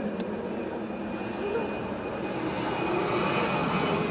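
Jet airliner's engines running on the runway: a steady high whine over a rushing noise, growing a little louder near the end as the plane gathers speed.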